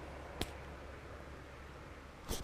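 Faint steady background hiss with a single short click about half a second in.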